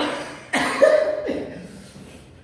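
Two sharp coughs in quick succession, the second trailing into a short voiced sound, from someone eating very spicy noodles.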